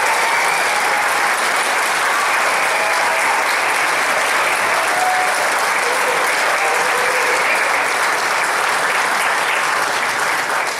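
Loud, steady applause from a hall audience, breaking out just after an a cappella song ends.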